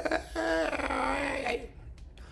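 A man's voice holding a wordless sung note, imitating a soprano's long-breathed phrase; the note sags in pitch and trails off into a breathy fade.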